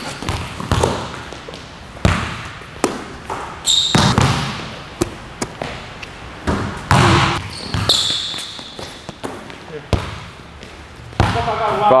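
A basketball bouncing on a hardwood gym floor in sharp thuds a second or two apart, with sneakers squeaking briefly twice.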